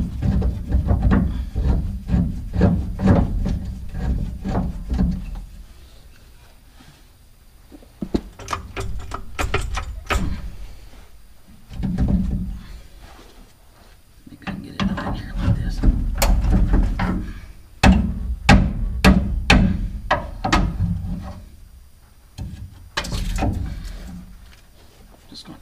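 Hand tools working a stuck rear leaf-spring bolt under a 2000 Ford F-250 Super Duty: bursts of metal clicks and knocks, with short quieter pauses between them.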